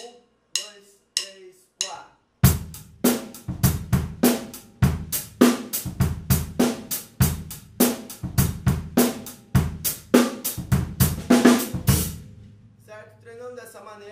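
Drum kit: four clicks counting in, then a groove of bass drum, snare and accented hi-hat played with up-down wrist strokes, the hi-hat accent moving between the downbeats and the offbeats without a break. The playing stops about twelve seconds in.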